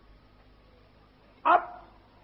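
A single short dog bark about one and a half seconds in, over the faint steady hiss and hum of an old tape recording.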